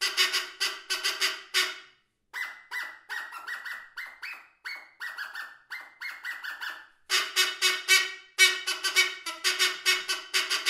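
Brass squeeze-bulb car horn played as a solo instrument: rapid rhythmic honks of one pitch, about four a second. From about two to six seconds in the honks turn quieter and thinner, muted by a kitchen towel stuffed down the bell, then come back at full strength.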